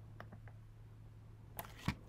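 Faint clicks of a computer mouse or trackpad selecting an item from a drop-down menu, over a low steady hum. A sharper, louder click comes near the end.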